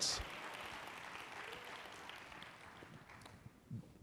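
Faint audience applause that dies away over about three seconds.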